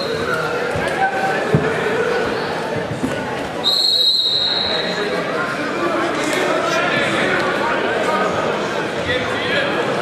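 Voices and crowd chatter echoing in a gymnasium, with one steady, shrill referee's whistle blast about three and a half seconds in that lasts over a second.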